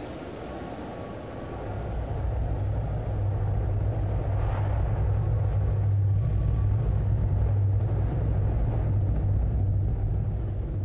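A steady low rumble that swells about two seconds in and then holds at an even level.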